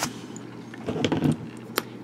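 A metal multi-function pen being handled, with a soft rustle about a second in and a single sharp click near the end.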